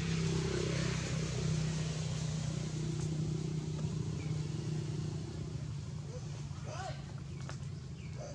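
Steady low hum of an engine running, with faint voices in the background and a few short high calls near the end.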